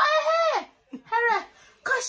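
A young woman's voice in animated, drawn-out exclamations: a long phrase that falls away at its end, then a shorter one after a brief pause.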